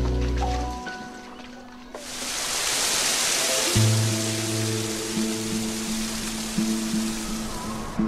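Slow background music of long held notes; about two seconds in, the steady rush of falling water, like a waterfall, comes in over it.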